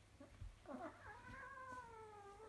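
A young Maine Coon kitten gives one long, faint, drawn-out call during a play fight. The call starts about half a second in and slowly falls in pitch.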